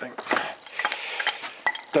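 Heavy metal chairlift grip parts scraping and knocking together as a Poma grip is handled and shifted in a pile of other grips, with a few sharp clicks, the sharpest near the end.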